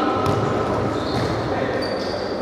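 Futsal played in a large, echoing sports hall: the ball is kicked a few times, shoes squeak briefly on the court floor, and players call out.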